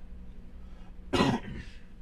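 A man clearing his throat once, briefly, a little over a second in.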